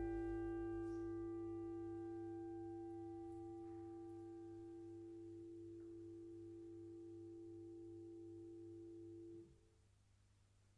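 A grand piano chord ringing on after being struck and slowly fading, until it is damped and stops suddenly about nine and a half seconds in.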